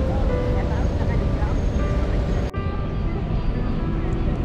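Busy street ambience: a steady traffic rumble with indistinct voices, which changes abruptly about halfway through at a cut.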